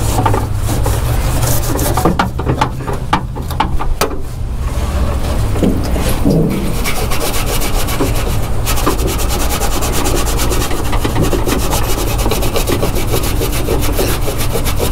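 A cloth rag rubbed hard in quick back-and-forth strokes over a painted steel car door, scrubbing off leftover adhesive with wax and grease remover, over a steady low rumble.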